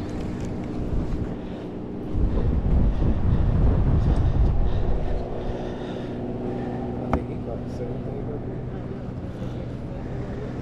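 A low rumble of wind on the microphone for about three seconds, over a steady low hum that runs throughout, with one sharp click later on.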